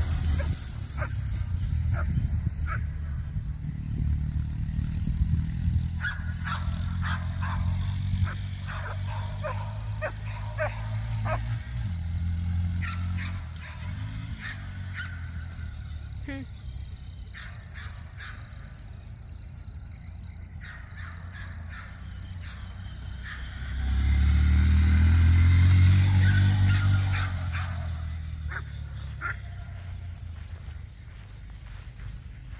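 Dogs barking and yipping repeatedly, mostly in the first half, over the steady drone of a Honda Monkey minibike's engine. The engine grows louder as the bike passes close by about three-quarters of the way through, then fades away.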